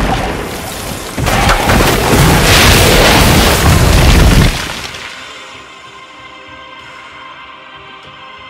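Explosion sound effect: a sudden boom, then a louder, longer rumbling blast from about one second in that dies away after four and a half seconds, over background music.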